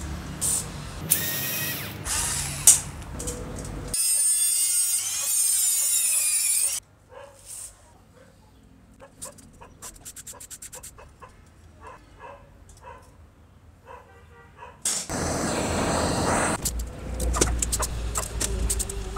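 Screwdrivers loosening the old screws on the metal motor housing of a vintage Hitachi electric hand planer: metal scraping and squeaking, with two louder grating stretches and a quieter run of small clicks in between.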